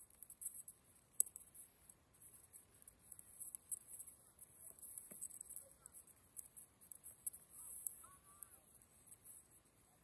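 Quiet outdoor background with a few faint sharp clicks, the loudest about a second in, and faint distant voices near the end.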